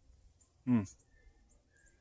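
A man's short 'hmm', falling in pitch, about a second in. Otherwise quiet, with a couple of faint bird chirps.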